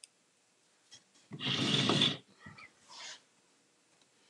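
A short, breathy, snort-like sound from a person's nose and throat, about a second long, a little over a second in, followed by two fainter breaths.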